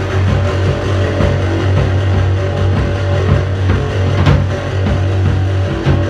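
A rock band playing loudly: a drum kit over a thick, steady low end of bass and guitar.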